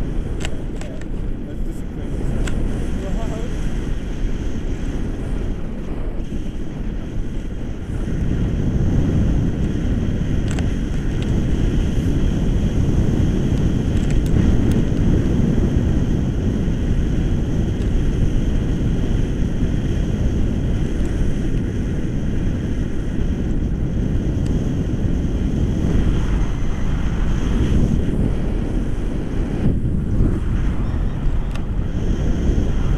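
Wind from a paraglider's flight buffeting an action camera's microphone: a steady low rumble that grows louder about eight seconds in.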